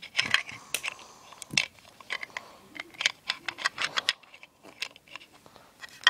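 Small hard-plastic Littlest Pet Shop toy pieces being handled: irregular sharp clicks and taps of plastic on plastic, thinning out after about four seconds.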